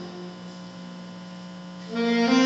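Steady electrical mains hum from the band's amplification, a single low tone held through a break in the playing. Near the end the jazz band comes back in.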